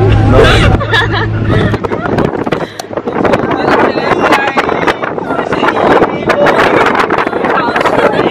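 Women's voices and laughter over the steady drone of a moving car; from about two seconds in, wind and driving noise of the car crossing the sand, with voices underneath.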